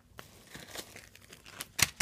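Plastic packaging crinkling as it is handled: faint scattered crackles, with one sharp, louder crackle near the end.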